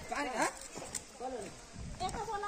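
People's voices calling out in short rising-and-falling calls, a few in the first half-second and another a little after a second in.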